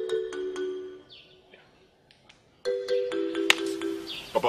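Background film music: short phrases of struck, bell-like keyboard notes that ring on. The first phrase fades about a second in, and a second begins after a pause of about a second and a half.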